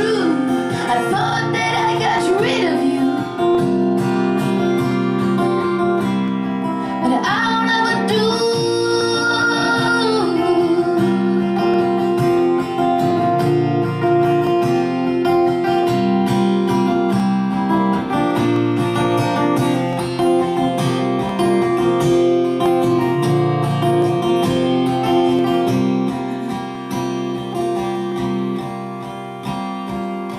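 Acoustic guitar strummed steadily under a folk song, with a woman's wordless singing gliding over it in the first few seconds and again for a few seconds near the start. After that the guitar carries on alone and gets quieter near the end.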